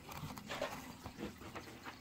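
Faint, scattered taps and light knocks of small cardboard toy boxes being handled and set down on a table.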